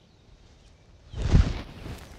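A golf iron swung down through the grass: one short swish and brush of the clubhead against the turf, a little after a second in.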